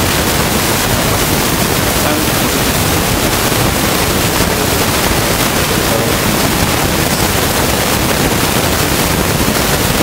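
Loud, steady static hiss spread evenly from low to very high pitch, with no change in level.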